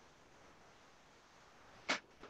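Faint steady hiss of a video-call audio line, broken just before the end by a single very short, sharp burst of noise.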